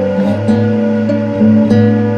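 Background music: acoustic guitar playing a gentle chord progression.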